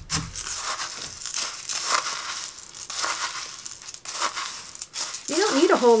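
Crushed decorative glass chips, wet with alcohol ink, stirred with a wooden craft stick in a clear cup: an uneven gritty scraping and crunching of the glass pieces against each other and the cup.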